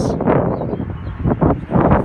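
Wind buffeting the microphone: a loud, uneven low rumble that surges a couple of times near the end.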